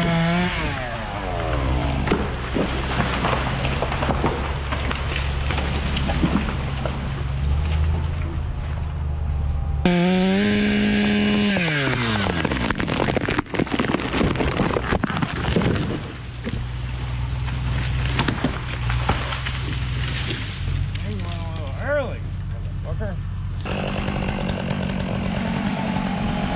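Chainsaw cutting through a walnut tree, running at high revs under load. About ten seconds in, its pitch falls away as the throttle eases, and then it picks up and cuts again.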